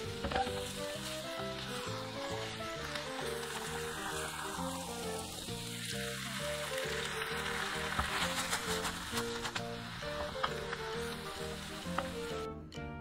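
Jjapagetti noodles and black-bean sauce sizzling as they are stir-fried in a nonstick pan, with noodle water added bit by bit, under background music with a melody throughout.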